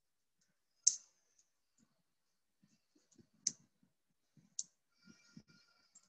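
Faint, sparse clicks of a computer keyboard and mouse: three sharper clicks about one, three and a half and four and a half seconds in, with softer ticks between.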